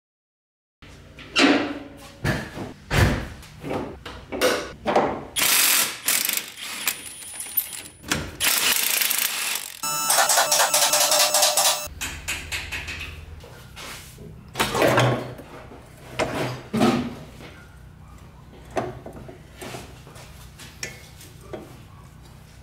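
Mechanical clicking, clanking and ratcheting from workshop work on a car raised on a two-post lift. The sharp knocks come irregularly, with a loud dense stretch of mechanical noise between about five and twelve seconds in, then a low steady hum.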